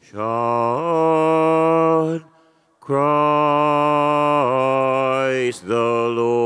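A man chanting a slow sung refrain in long held notes. A phrase of about two seconds steps up in pitch, then after a short pause a longer phrase steps down, and another phrase begins just before the end.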